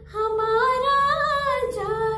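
A woman singing one long drawn-out note with vibrato, no words, its pitch lifting slightly in the middle and sliding down near the end.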